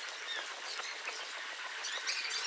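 Thin dining-hall background: light clatter and faint distant voices, with no low end to the sound.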